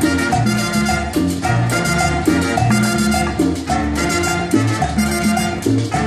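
A live salsa band playing an up-tempo number with brass, piano, double bass, drum kit and hand percussion.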